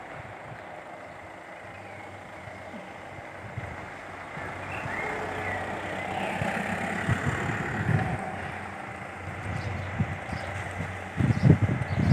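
A motor vehicle running past, its sound growing louder over a few seconds about midway and then fading again.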